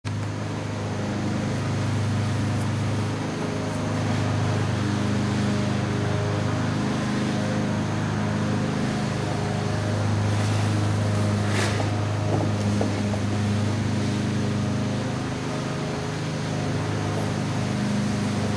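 A steady low mechanical drone, like a motor running, swelling and fading slightly, with one short knock about twelve seconds in.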